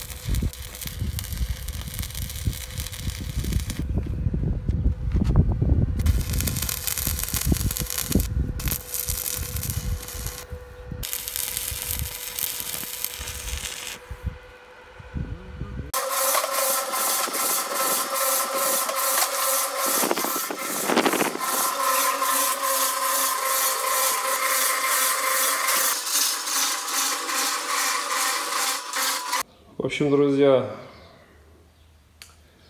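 Manual stick arc welding of rebar onto a small steel plate: a crackling, sputtering arc that stops and restarts several times. About halfway through it gives way to an electric concrete mixer running, its drum turning a batch of concrete with a steady hum and fine rattle.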